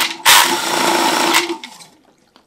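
Cordless drill spinning a homemade 3-inch ABS-pipe paint-can shaker loaded with a bottle holding a ball bearing. The drill runs with a steady whine, dips for a moment just after the start, then runs louder. It winds down and stops about a second and a half in.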